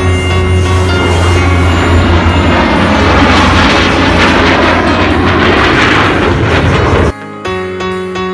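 Loud, steady jet roar from an F-35 and a P-38 Lightning flying past in formation, over background music. The roar cuts off abruptly about seven seconds in, leaving soft piano music.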